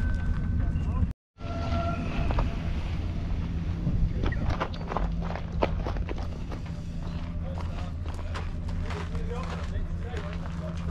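Indistinct background voices over a steady low rumble, with scattered clicks and knocks. The sound cuts out completely for a moment about a second in.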